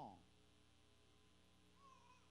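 Near silence: room tone with a faint steady hum, just after a man's spoken word trails off at the very start.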